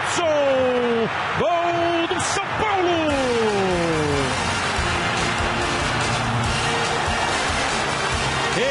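Football TV commentator's long, drawn-out goal cry, held notes sliding down in pitch over the first four seconds, over a stadium crowd cheering the goal; the crowd cheering carries on alone after the cry fades.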